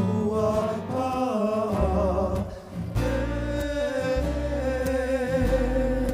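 Live hula ʻauana music: a singer holding wavering sustained notes over guitar strumming and a low bass line, with a brief breath-like pause about two and a half seconds in.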